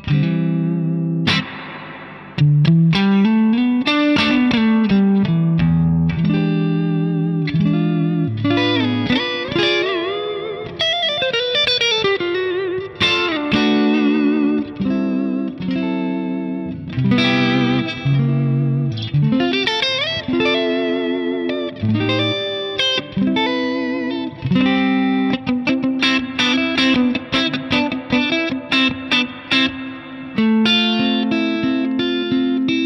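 Suhr Custom Classic electric guitar played through a Ceriatone Prince Tut amplifier (a Princeton Reverb-style combo) into a 2x12 open-back cabinet, with the amp's volume at 12 o'clock and its reverb switched on at number 3. Chords and single-note lead phrases with string bends and vibrato, in short phrases separated by brief pauses.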